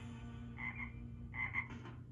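A cartoon frog croaking "ribbit, ribbit": two short double croaks about a second apart, heard through a television speaker.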